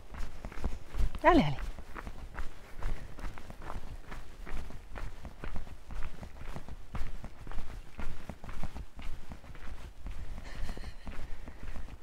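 Footsteps on a gravel path, a steady run of short steps, over a low rumble of wind on the microphone. About a second in, a brief voice sound falls in pitch.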